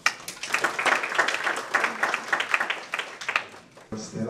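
Audience applauding: a dense run of hand claps that eases off shortly before the end.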